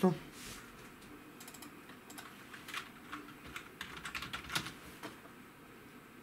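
Typing on a computer keyboard: a string of irregular key clicks over several seconds, as a web address is typed into a browser.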